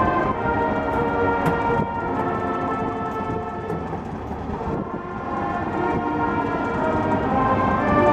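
Marching band brass and winds playing the national anthem, holding sustained chords. The sound thins and softens around the middle, then swells again toward the end.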